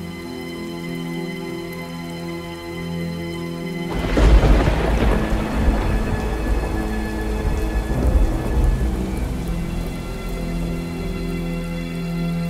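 Rain falling under soft, held music tones, then a loud thunderclap about four seconds in that rumbles on for several seconds over the rain.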